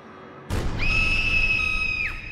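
Soundtrack musical sting: a deep boom about half a second in, then a long, shrill, high flute-like note that bends up into pitch, holds steady, and starts to slide down at the very end.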